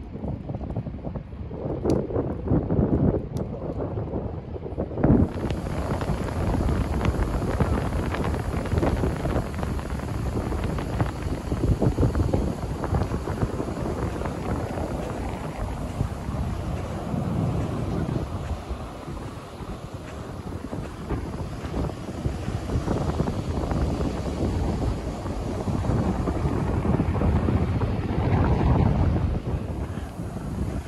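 Wind buffeting the microphone. From about five seconds in, ocean surf washes up a beach, swelling and falling back every few seconds under the wind.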